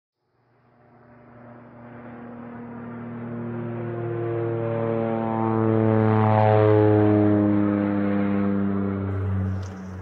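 Deep droning hum with strong overtones, swelling slowly to its loudest about six or seven seconds in, then easing off and dipping slightly in pitch before it cuts off just before the end, much like a propeller aircraft passing over.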